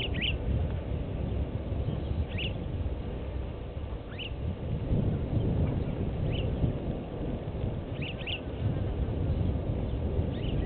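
A bird calling in short, high chirps, one or two at a time, about every two seconds, over a steady low outdoor rumble.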